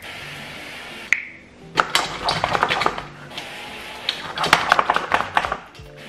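Avocado oil cooking spray hissing in two steady bursts of about a second each, at the start and a little past halfway. Between and after the bursts come quick clusters of sharp clicks and rattles.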